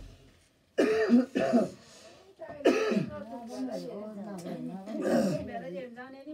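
A person's voice: a few harsh, cough-like bursts about a second in and again near the middle, then a long, wavering, drawn-out vocal sound.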